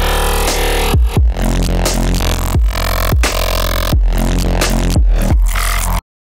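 Playback of an electronic music track: heavy bass with kick drums landing at uneven, off-grid spots, the bass sidechained to the kick through a MIDI trigger track made from the drum audio. The playback cuts off suddenly at the end.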